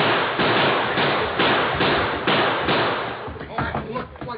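Gunfight: a rapid string of loud gunshots, about two a second, fading near the end into excited voices.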